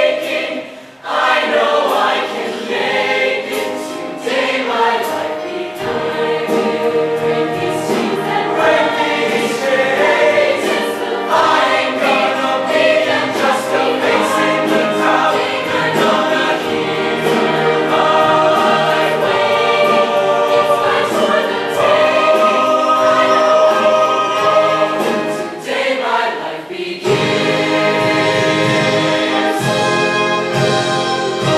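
A large mixed show choir singing in harmony, male and female voices together. The singing breaks off briefly about a second in and again a few seconds before the end, and a low bass part fills in from about six seconds in.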